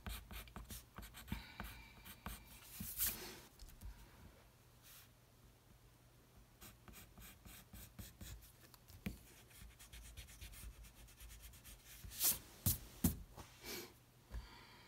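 Pencil drawing lines on paper: a run of quiet, short scratchy strokes, with louder spells about three seconds in and again near the end.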